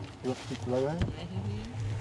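People talking, over a steady low hum, with a single knock about a second in.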